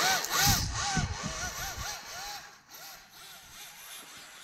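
RC snowmobile's electric motor whining, rising and falling in pitch about three times a second as the throttle is pulsed, over the hiss and rumble of the track churning snow. The sound fades in the second half as the sled moves away.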